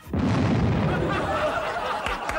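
A staged pyrotechnic bang on a TV set: a sudden loud blast with a low rumble that dies away over about a second. It is followed by studio audience laughter.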